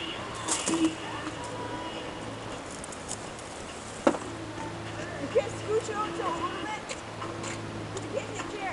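A single sharp knock about four seconds in, as a plastic wiffle ball is struck, over a steady low hum.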